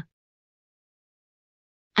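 Digital silence: a gap between two spoken phrases, with the tail of a Korean sentence cutting off right at the start and an English sentence beginning at the very end.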